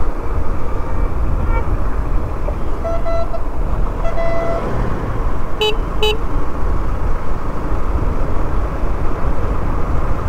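Wind rushing over the microphone and a motorcycle running at riding speed, a steady low rumble throughout. A vehicle horn sounds faintly a couple of times in the first half, then two short, loud horn toots come in quick succession just past the middle.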